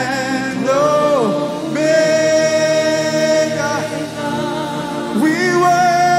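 Slow gospel worship song: a man singing into a microphone, with gliding phrases and one long held note in the middle, over steady held chords.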